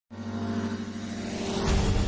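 Opening of a TV news programme's theme music: a held synthesizer chord that swells into a whoosh with a deep bass hit about a second and a half in.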